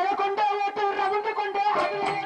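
Live stage-drama band music: steady held notes played over rapid drum strokes, with the notes changing near the end.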